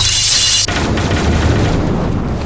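Battle sound effects: a hissing whoosh for about the first half-second, then a low rumbling boom that runs on under dramatic music, as a volley of flaming projectiles flies over the camp.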